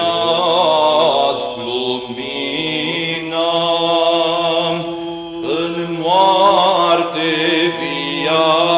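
Byzantine-style Orthodox chant in Romanian, Matins in the seventh tone (glas 7): a slow, ornamented sung melody over a steady held low drone note. The phrase breaks off briefly about five seconds in and a new phrase starts.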